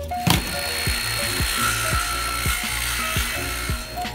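Background music with a steady beat, and over it a power saw cutting through a wooden dowel, starting about a quarter second in and running for about three and a half seconds.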